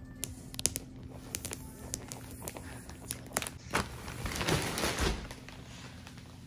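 Plastic wrap of a compressed bed-in-a-box mattress crackling in quick sharp clicks as it is opened, then a longer rustling noise about four seconds in as the mattress starts to expand.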